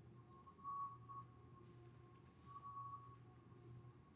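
Near silence: room tone with a faint steady low hum and a faint high whine that swells and fades.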